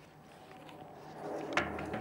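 Faint rustling of a nylon rifle sling being handled, with a single soft click near the end.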